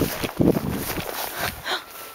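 Running through long grass with a handheld camera: uneven footfalls, grass swishing against the legs and rumbling handling noise, easing off near the end.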